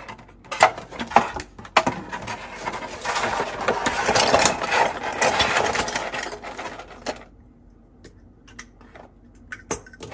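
Thin clear plastic blister tray being handled: a few sharp clicks, then several seconds of dense crackling of the plastic that stops about seven seconds in, followed by a couple of light taps.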